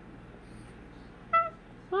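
A single brief, high-pitched chirp from a cockatoo about one and a half seconds in, over quiet room tone.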